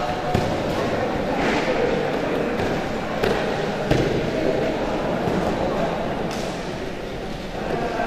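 Judokas' bodies and feet thudding and slapping on the judo mats during a bout, with the heaviest thud about four seconds in as one is thrown down; a murmur and shouts of onlookers run underneath.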